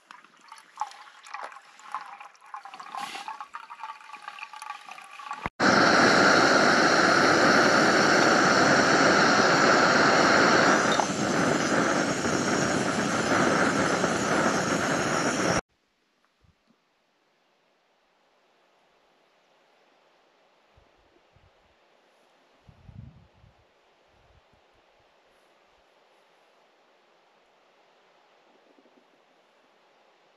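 Filtered water trickling from a squeeze-bottle filter into a metal pot, then a loud steady rushing hiss from the camp stove and pot that starts and stops abruptly after about ten seconds. Near silence follows, with one faint soft thump.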